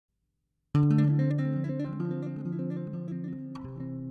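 Solo electric bass guitar played fingerstyle in a flamenco style: a low note rings under a quick run of plucked notes. It starts abruptly, loudest at the first attack, and near the end settles into held, ringing notes.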